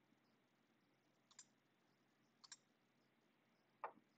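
Mostly near silence, broken by a few faint, sharp computer keyboard and mouse clicks: one about a second in, a quick pair halfway through, and one near the end.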